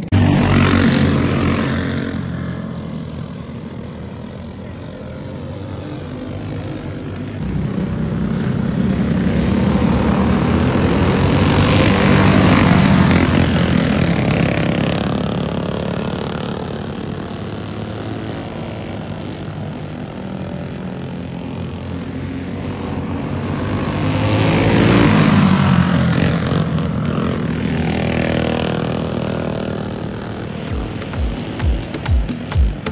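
Engines of several racing go-karts running around the track. They swell loudest three times, about every twelve seconds, as the pack passes close, and fade between passes.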